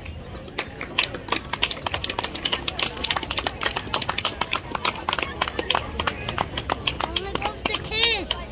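Scattered applause from a small group of people, the separate claps clear and irregular, beginning about half a second in and stopping just before the end, with voices chatting underneath.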